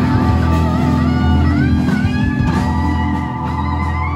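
Live band playing: an electric guitar lead with bent notes and vibrato over the other guitars and drums.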